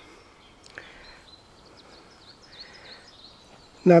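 Faint songbird chirping: a run of short, high, sliding notes in the middle, over quiet outdoor background.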